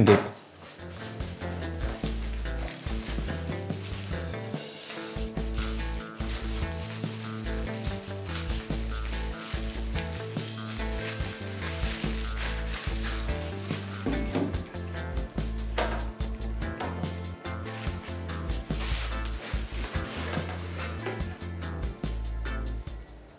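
Plastic bubble wrap crinkling and crackling as a camera is unwrapped by hand, over background music with a changing bass line.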